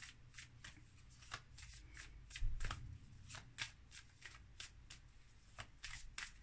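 A deck of tarot cards being shuffled by hand, cards slapping from hand to hand in a regular run of crisp strikes about four a second. A single low thump comes about halfway through.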